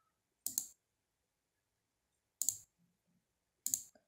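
Three computer mouse button clicks, short and sharp, about half a second in, about two and a half seconds in and near the end, with silence between.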